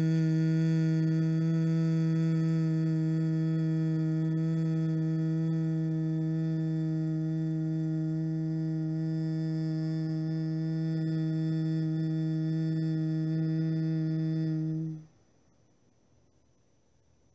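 A woman humming one long, steady, low note through closed lips: the slow humming exhalation of bhramari pranayama, the yogic bee breath. It cuts off near the end.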